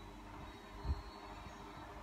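Quiet room tone with a steady low hum and a single dull low thump about a second in.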